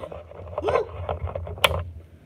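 A light switch clicks off once, sharply, near the end. Before it comes a brief voice sound, with low rumble from movement underneath.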